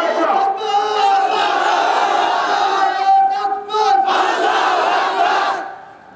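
Many voices of a crowd calling out loudly together in a sustained chant, dropping away about five and a half seconds in.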